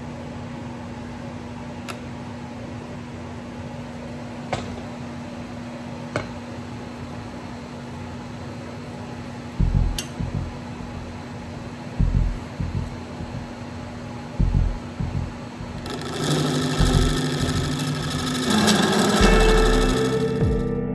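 Wood lathe running with a steady motor hum while a hand-held turning tool cuts the spinning wood-and-epoxy-resin segmented ring, the cuts coming as irregular low bumps from about halfway through. Guitar music comes in near the end.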